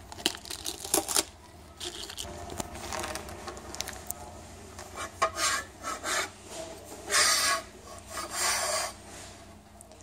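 Plastic wrapping rustling and scraping against a steel basketball pole tube as the top pole is slid out of the middle pole, with irregular rubs and knocks and two longer scrapes in the second half.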